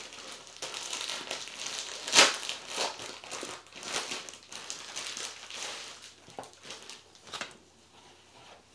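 Crinkling of the packet of a new pair of tights as it is opened and the tights are pulled out: irregular rustles with one sharp, louder crackle about two seconds in, dying away near the end.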